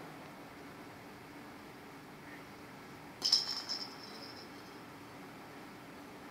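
A cat toy ball with a small bell inside rattling and jingling about three seconds in: a quick burst of clicks, then a short bright ring that fades within a second.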